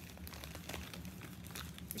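A small bag of craft embellishments being handled as items are pulled out of it: a scatter of soft crackles and clicks.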